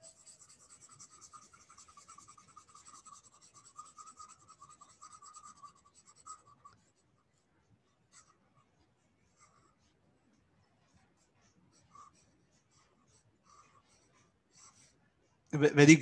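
Stylus scratching back and forth on a drawing tablet while colouring in a shape, a faint steady scribbling for about six seconds, then a few short isolated strokes and taps.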